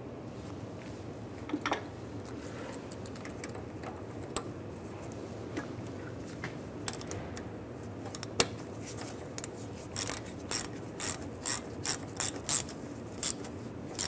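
Hand ratchet clicking as it runs in the bolt that holds the power steering pressure hoses to the steering rack. A few scattered clicks at first, then a steady run of clicking strokes about twice a second over the last few seconds.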